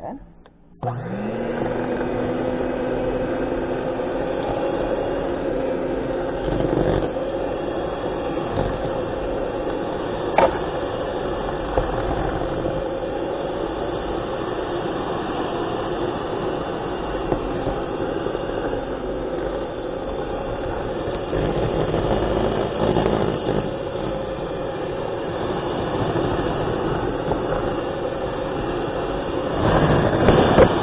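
Electric mixer beating butter and brown sugar in a stainless steel bowl: the motor starts about a second in with a rising whine as it spins up, then runs steadily, with a single sharp click about ten seconds in.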